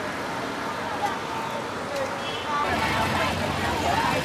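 Street crowd noise from a large marching procession: a steady haze of many distant voices mixed with road traffic. It gets louder about two-thirds of the way through, with voices close by.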